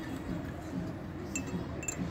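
A long metal spoon stirring macchiato in a glass mug, clinking against the glass: several quick, light clinks that start about a second and a half in.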